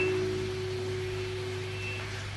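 A single electric guitar note left ringing through the amplifier, slowly fading out, over a steady low amplifier hum.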